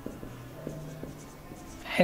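Marker pen writing on a whiteboard: a run of faint short squeaks and taps as the letters are drawn.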